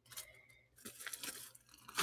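Faint handling noises: soft crinkling and a few light clicks, in two short spells.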